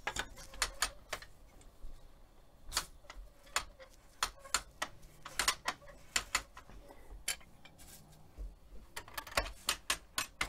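Wooden floor loom being worked as its warp is wound forward with the brake eased: irregular sharp clicks and knocks from the ratchet, brake and frame, several bunched close together at a time.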